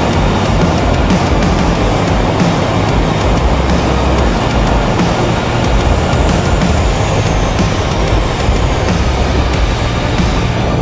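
P&M Quantum 912 flexwing trike's Rotax 912 engine running steadily in cruise, mixed with loud, even wind rush on the camera microphone in flight. Music plays under it.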